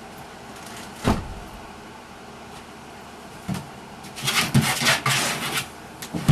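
Plastic video-game rocker chair knocking as a puppy pushes at it: one sharp thud about a second in, a lighter knock later, then a run of quick scraping knocks and rustles near the end as the chair tips over.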